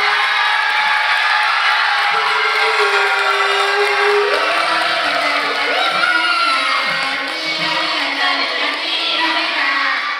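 A large audience of children cheering and shouting over music.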